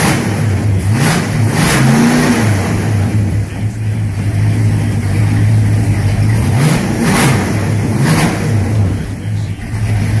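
Carbureted engine of a 1963 Chevy C10 idling steadily, its throttle blipped by hand at the carburetor linkage: a couple of quick revs about a second in, and a few more around seven to eight seconds, each falling back to idle.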